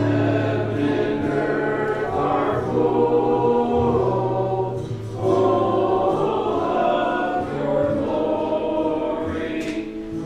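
A congregation singing a hymn together in slow, held notes, with a brief break for breath about five seconds in.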